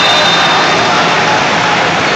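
Steady, loud din of a busy indoor sports hall: the wash of crowd noise and play from many courts, with no single sound standing out.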